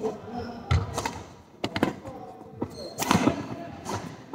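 Badminton rally: a quick series of sharp racket hits on the shuttlecock mixed with players' footfalls thudding on the sports hall floor, the heaviest impacts a little under a second in and about three seconds in.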